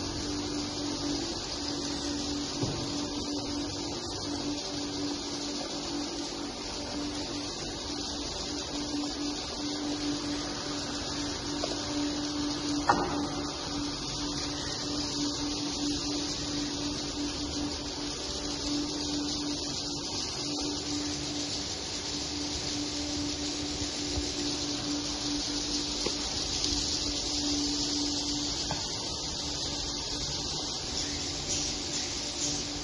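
Swiftlets chirping en masse in a swiftlet nesting house, together with swiftlet calls played from the small tweeters on the rafters: a steady, dense, high-pitched chatter over a steady low hum.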